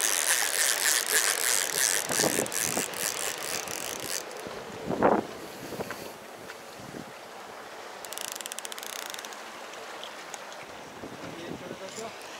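Seawater washing and splashing against lava rocks, with a bright fizzing hiss for the first few seconds that then settles lower. There is a short louder splash or thump about five seconds in, and a brief run of fast, fine ticking about eight seconds in.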